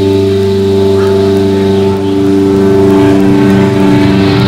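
A heavy metal band's amplified instruments hold a loud, sustained droning chord as a song begins. About halfway through, a pulsing low note starts under it.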